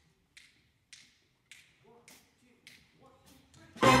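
A tempo count-off: sharp, evenly spaced clicks about two a second, with a soft voice under the later ones. A jazz big band with brass then comes in loudly on the beat just before the end.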